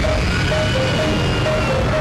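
Live concert music played loudly through an arena sound system: a repeating two-note figure alternating about three times a second over a heavy bass.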